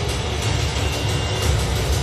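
Movie trailer soundtrack playing through home-theater speakers: dense music and sound effects over a strong, deep low rumble.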